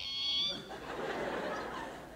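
A brief high-pitched squeal that cuts off about half a second in, followed by a soft spell of audience laughter.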